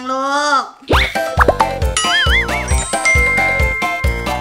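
A drawn-out voice for the first half second, then a bright children's-style intro jingle starts about a second in: a steady beat with rising swooping tones, a wavering tone, and a held high note near the end.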